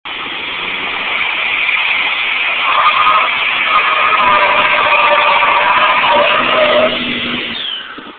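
Cummins-powered Dodge Ram pickup doing a burnout: the diesel engine held at high revs while the rear tyres spin and squeal against the pavement, a loud steady din that drops away suddenly near the end.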